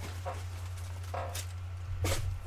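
Low, steady electrical hum with a few faint, brief rustles and one short hiss about halfway through.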